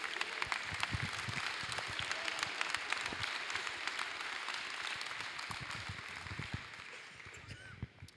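Audience applauding, a dense patter of many hand claps that thins out and dies away over the last couple of seconds.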